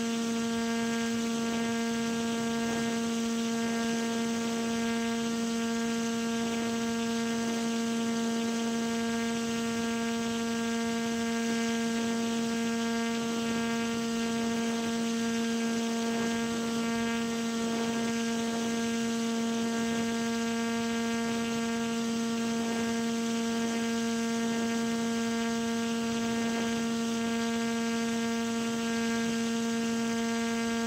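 A steady hum held at one constant pitch, with a ladder of overtones above it, under a faint rush of air noise. It never changes in pitch or loudness.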